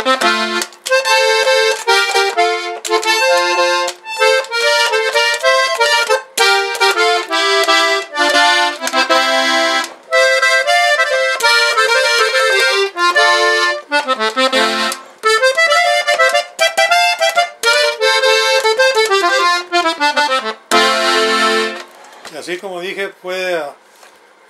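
Hohner Panther button accordion playing a quick tune on swing-tuned G reeds: the tremolo has been reduced to sit midway between traditional factory wet tuning and dry tuning. The playing stops about 22 seconds in.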